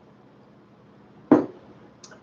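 A drinking glass set down on a table with a single sharp knock about a second and a half in, after a stretch of quiet room tone.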